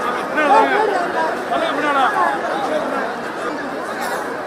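A large, dense crowd talking and calling out at once: many overlapping voices, loud and continuous.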